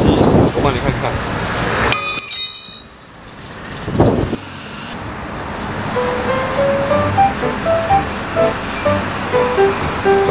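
A few words of speech, then a short, bright shimmering sound effect about two seconds in. From about six seconds, soft background music plays a simple melody of single notes.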